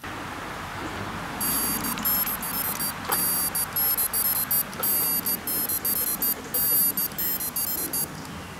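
Tractive GPS tracker on a dog's collar sounding its locator beep, set off remotely from the phone app so a nearby dog that can't be seen can be found. It plays a high-pitched, rapid series of beeps in short groups, starting about a second and a half in.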